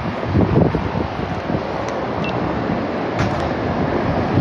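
Wind buffeting the phone's microphone, gusty in the first second and then steadier, over the noise of traffic on a city street with a car passing.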